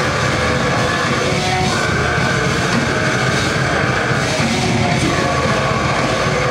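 Live heavy metal band playing loud: distorted electric guitars holding chords that change every second or two over drums and bass.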